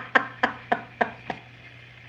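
A woman's breathless laughter: five short, clicky pulses about three a second, fading out about one and a half seconds in.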